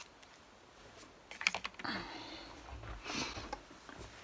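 A few sharp clicks about a second and a half in, followed by short rustling handling noises, as things are moved about on a craft desk.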